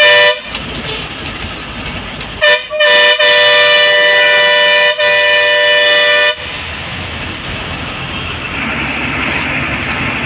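Bus horn sounding with a two-note tone: a short blast, then about two seconds later a quick tap and a long blast of about three seconds with a brief dip in the middle. The bus's engine and road noise run steadily underneath.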